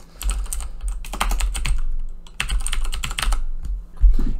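Typing on a computer keyboard close to the microphone: two runs of rapid keystrokes with a short pause about halfway, over a low rumble.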